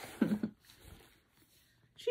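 A brief chuckle from a woman's voice, then near silence: room tone.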